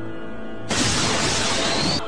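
Anime battle sound effect over background music with held tones: a sudden loud burst of harsh, shattering noise starts about two-thirds of a second in, with a faint rising whistle inside it, and cuts off abruptly after about a second.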